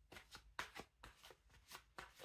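Faint, irregular crisp clicks and flicks of tarot cards being handled, about eight to ten in two seconds.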